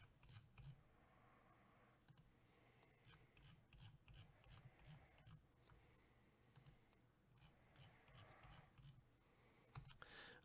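Near silence with a few faint computer mouse clicks spread through it, the clicks of a mouse button pressed again and again.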